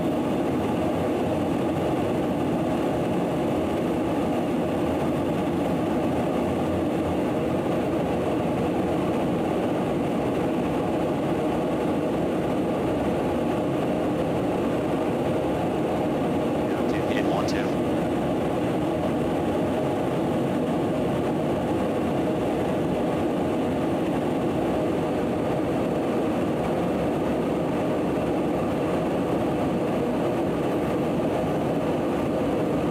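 Steady in-flight drone of a KC-135 Stratotanker heard from inside the aircraft: engine and airflow noise at an even level throughout.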